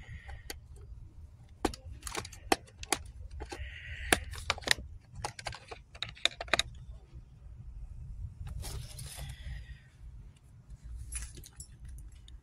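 Handling of a cardboard product box at a store shelf: a string of irregular sharp clicks and taps with a few brief scraping rustles, over a low steady rumble.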